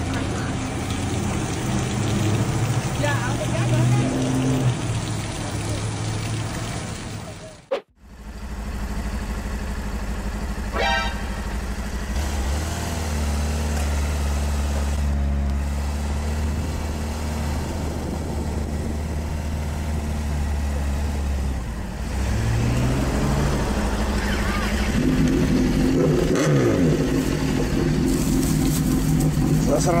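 A sport motorcycle's engine idling steadily, then rising in pitch as it revs near the end and running louder as it pulls away. Before that, a few seconds of voices over a hiss of spraying water stop abruptly.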